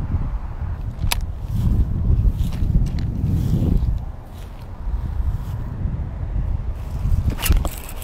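Low rumble of wind and handling noise on the camera's microphone, with a sharp knock about a second in and a few more near the end.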